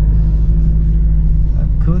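Car engine and road noise heard inside the cabin while driving slowly: a steady low drone with a constant hum.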